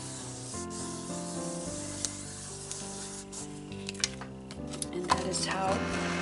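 Fingers rubbing and pressing a freshly glued cardstock panel flat onto a card base: a dry papery rubbing, with a few small clicks and taps.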